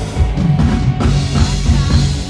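Loud live band music over a PA system, a drum kit and bass guitar driving a steady beat.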